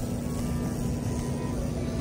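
Steady low hum of supermarket background noise beside refrigerated freezer cases, with faint background music.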